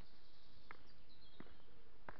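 Two footsteps on earth-and-block steps going down, about two-thirds of a second apart, over outdoor background with a few faint bird chirps.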